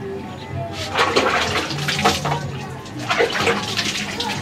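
Water splashing and pouring in two rushing bursts, the first about a second in and the second near the end, over background music.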